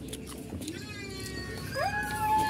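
A drawn-out animal cry like a dog's whine or a cat's meow: a faint falling call about halfway in, then a rising call near the end that holds one steady note.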